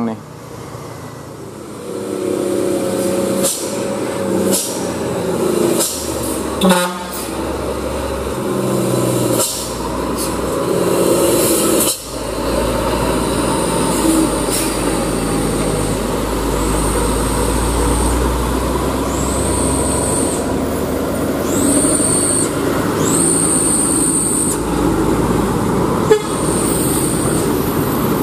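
Loaded diesel trucks working hard round a steep mountain hairpin with other traffic passing, a low engine rumble that builds partway through, and toots from a vehicle horn. High-pitched drawn-out sounds recur in the second half.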